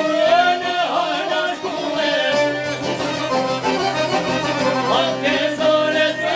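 Live Albanian folk music: a man singing a wavering melody over long-necked plucked lutes, a violin and an accordion.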